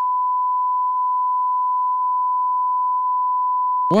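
Censor bleep: one steady, high beep tone held for about four seconds, cutting off suddenly as speech resumes.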